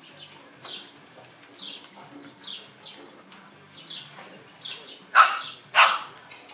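A six-week-old Australian Cattle Dog puppy gives two sharp barks in quick succession near the end. A bird chirps repeatedly in the background.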